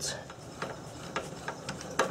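A few faint, sharp clicks and light knocks, about one every half second, over a low steady hum: hands handling a steel jack stand under a car.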